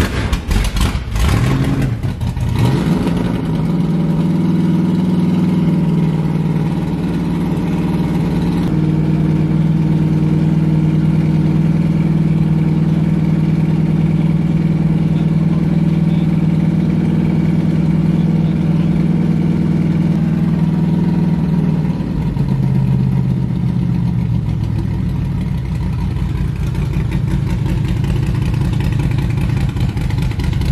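Carbureted engine of a pro street Starfire firing up after the gas pedal is pumped: it stumbles for the first couple of seconds, then runs at a steady fast idle. About 22 seconds in, the pitch drops and the idle settles lower and rougher.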